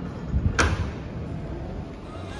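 A glass door pushed open by hand: a dull thump, then one sharp latch click about half a second in.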